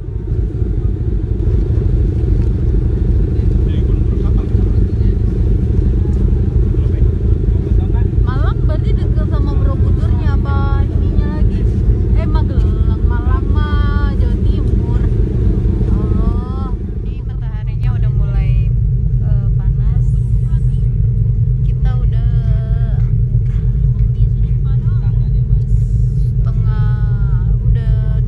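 Loud, steady low rumble on the open deck of a passenger ferry, with passengers chatting in the background.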